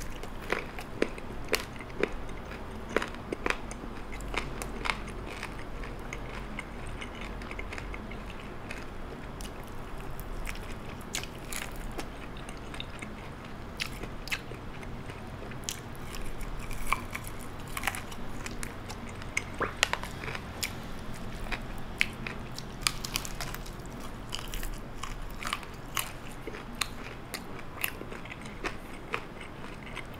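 A person biting and chewing a crispy-coated fried chicken drumstick, with irregular sharp crunches and mouth clicks throughout.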